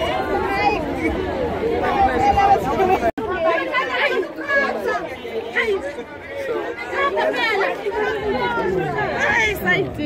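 Several people talking at once in lively chatter, outdoors among a crowd. The sound cuts out for an instant about three seconds in.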